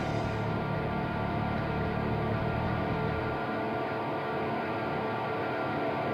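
A live metal band's distorted guitars and bass holding a sustained, droning wall of sound. The lowest bass drops away a little past halfway.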